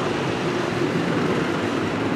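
Steady mechanical rumble and hiss with no clear rhythm, from running machinery or traffic close by.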